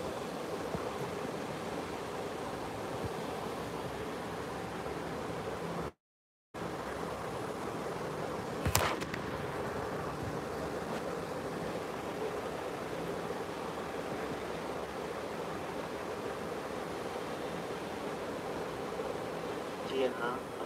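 Steady hiss-like background noise in a live broadcast's audio, heard through a laptop speaker. It cuts to dead silence for about half a second six seconds in, and a short sharp crackle comes near nine seconds.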